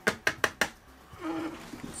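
A quick run of five or six sharp, hard plastic clicks and taps in the first half second or so, as the ABS print and the plastic storage bin are handled.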